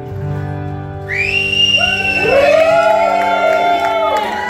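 Acoustic guitars' last chord ringing out as a song ends, then loud whistles and whoops from the audience starting about a second in, several at once, rising and falling in pitch.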